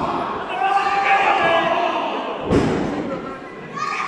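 A single heavy thud of a wrestler's body landing on the wrestling ring canvas about two and a half seconds in, over raised voices calling out.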